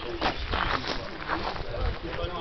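Indistinct voices of people talking in the background, with low rumbling on the microphone as the camera is moved about.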